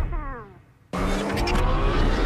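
Car engine sound effect in a TV commercial. A falling whine dies away to a brief near-silence, then about a second in the engine cuts back in suddenly and its pitch slowly rises, over a steady low hum.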